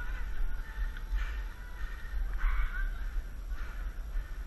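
Short harsh caw-like calls repeating about once a second, over a steady low rumble.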